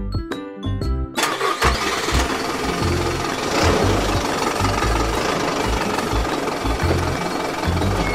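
Children's background music with a bass beat. About a second in, a truck engine sound effect starts up and keeps running steadily under the music.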